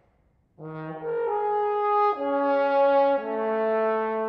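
Solo trombone coming in about half a second in and playing a slow phrase of four held notes, moving to a new pitch roughly every second.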